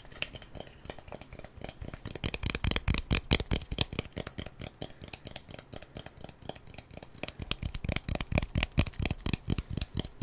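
ASMR hand sounds close to the microphone: a rapid, uneven run of light skin taps and crackles from fingers and palms moving.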